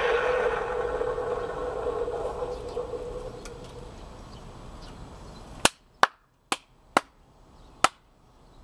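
Sound effect from a 3 ft animated skeleton butler Halloween prop's speaker: a steady tone slowly fades out over about five seconds. The sound then cuts to near quiet, and five sharp clicks follow a little apart.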